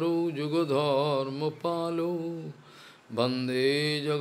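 A man chanting Sanskrit prayer verses into a microphone in a slow melody, drawing out long notes that waver in pitch. He breaks off briefly about two and a half seconds in, then starts the next line.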